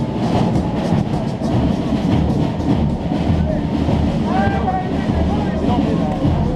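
Loud, rumbling din of a football team packed into a stadium tunnel: players shouting, over a dense clatter of many sharp knocks.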